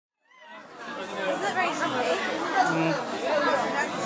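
Indistinct chatter of several people talking at once in a room, fading in about half a second in.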